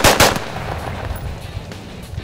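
Semi-automatic rifle fired rapidly: the last two shots of a four-round string come right at the start, about a sixth of a second apart, and their echo dies away after.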